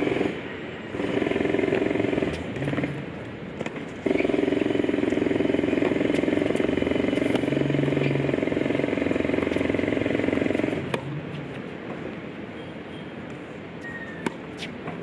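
A motor running with a steady drone: briefly about a second in, then from about four seconds in until it cuts off near eleven seconds. Sharp tennis ball strikes off a racquet sound now and then.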